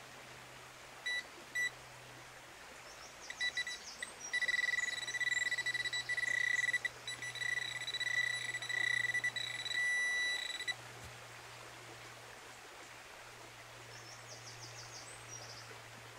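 Garrett Pro Pointer pinpointer sounding its high-pitched alert as it is probed through loose dug soil: two short beeps about a second in, then a near-continuous alert tone for about six seconds that pulses in strength. The alert signals a metal target close to the probe tip, a penny in the spoil.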